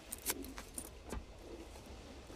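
A few light clicks and rattles of handling as a cigar is brought to the mouth and clamped in the teeth, over a low, steady background rumble.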